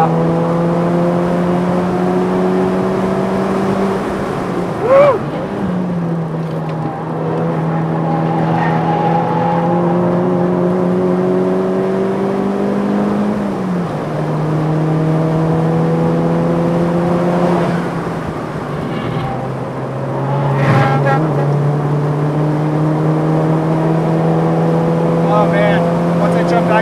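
Tuned VW MK5 GTI's turbocharged 2.0-litre four-cylinder heard from the cabin under hard track driving. Its revs climb and then drop at gear changes about three times. There is a short, loud chirp about five seconds in.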